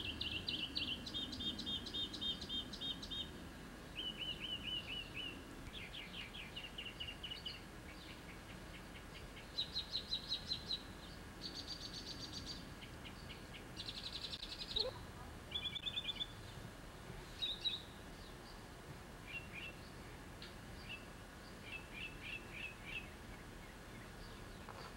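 Songbirds singing outdoors: a steady string of short trilled and chirped phrases, each a second or so long, following one another with brief pauses.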